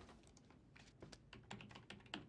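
Faint, irregular clicking of keys being typed on a computer keyboard.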